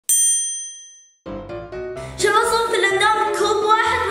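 A single bright ding that rings out and fades away over about a second. After a short gap, background music comes in and gets louder about two seconds in.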